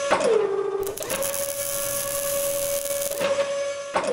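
Sound effects of robotic welding arms in an animated logo sting. A steady mechanical motor whine drops in pitch just after the start. From about one second in to past three seconds, a crackling hiss of welding sparks plays over the whine.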